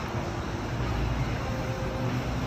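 Battery-electric Hino 500 truck rolling past with no engine sound, only tyre and road noise and a low rumble, plus a faint steady tone in the second half.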